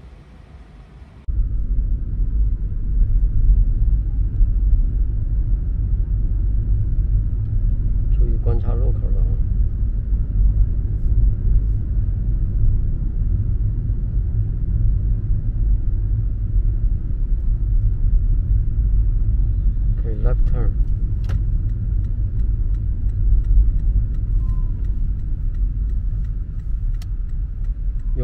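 Steady low road and engine rumble inside a moving Toyota car cabin, starting abruptly about a second in.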